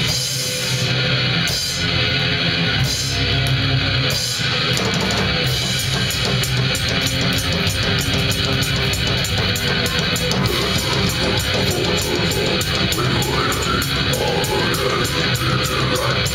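Live band playing electric guitars and drum kit, heard from within the audience. The first few seconds go in stop-start hits with short breaks, then settle into a fast, steady drum beat under the guitars.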